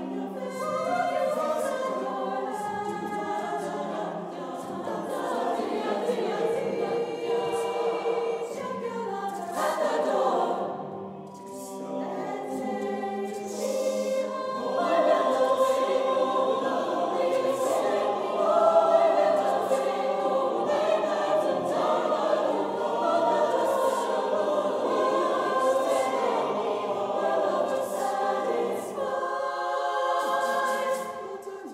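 Mixed choir singing a cappella in seven parts, with a low held note under the upper voices for the first dozen seconds. About ten seconds in the voices slide downward and briefly thin out, then the singing comes back fuller and louder.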